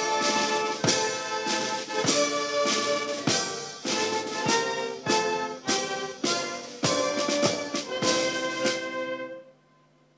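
Ceremonial wind band playing brass music, with a loud percussive beat a little under twice a second. The music stops abruptly about nine and a half seconds in.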